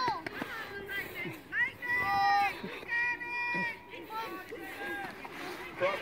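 Indistinct shouting voices from the field and sideline: several high-pitched, drawn-out calls, with no clear words.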